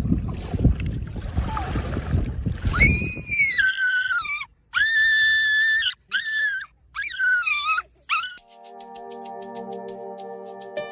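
Red toy poodle howling in about five high, wavering calls: the first long and falling in pitch, the second held steady, then shorter ones. Before the calls there is a low rumbling noise, and music starts near the end.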